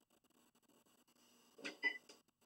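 Treadmill console buttons being pressed: mostly quiet, then near the end a short tap and a brief electronic beep from the console.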